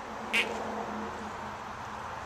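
Outdoor background noise with a brief high chirp about a third of a second in, followed by a faint low hum for about a second.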